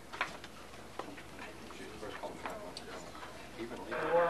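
Quiet room with faint murmuring voices and a scattering of small irregular clicks and taps.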